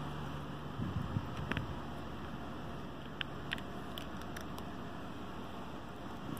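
Steady background room noise, like a fan or air conditioner running, with a few faint, short clicks scattered through it.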